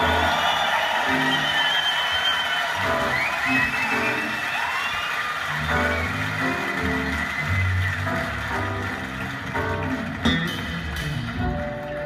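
A live band playing, with a moving bass line under guitar and other sustained instrument lines, heard as television playback picked up by a phone's microphone.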